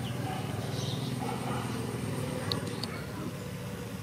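Small motorbike engine running at low speed as the bike rides slowly closer, a steady low pulsing drone.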